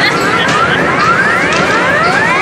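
Arcade jackpot game's electronic sound effect: a rapid run of rising whooping sweeps, about three or four a second, over the arcade's background din.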